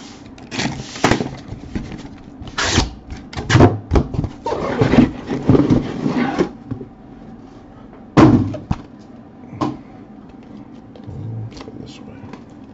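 Cardboard shipping case being opened and its sealed trading-card hobby boxes lifted out and set down: cardboard flaps and boxes rubbing and scraping against each other, with a sharp thump about eight seconds in, the loudest sound, as a box is put down.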